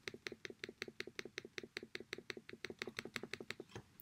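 A fast, even run of faint clicks from the computer controls, about nine a second, as an image is moved across the design screen; the clicking stops shortly before the end.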